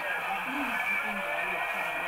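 Muffled, indistinct voices from a home video playing through a small TV speaker, over a steady high hiss.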